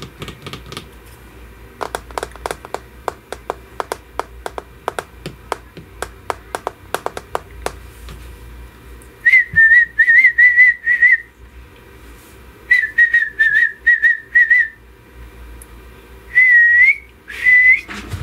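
A child whistling three short, high, wavering phrases in the second half, each a few notes long. Before that comes a quick run of light clicks and taps, several a second.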